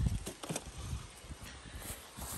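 A few soft taps and rustles from handling in the first half second, then a faint, even outdoor background.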